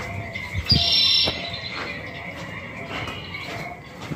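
Jungle-themed background music playing over loudspeakers, with a short high bird-like call about a second in and a soft low knock just before it.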